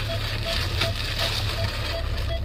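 Plastic bag rustling and crinkling as a boxed gift is handled and drawn out of it, over the low steady hum of a car's engine in the cabin.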